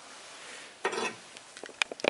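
Handling noise while working in an engine bay: a short rustle about a second in, then several light, sharp clicks near the end.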